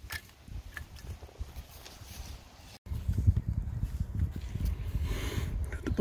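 Low rumbling noise with scattered clicks and knocks, typical of a hand-held phone microphone being handled outdoors. It breaks off at a cut about three seconds in and comes back louder.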